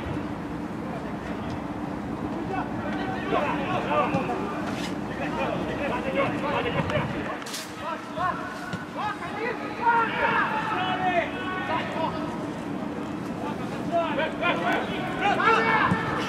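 Players and coaches shouting to each other across the pitch during play, heard as scattered calls over a steady low hum, with one sharp knock about seven and a half seconds in.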